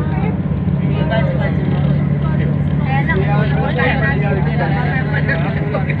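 Steady low engine drone of a moving tour bus heard from inside the cabin, with passengers chatting indistinctly over it.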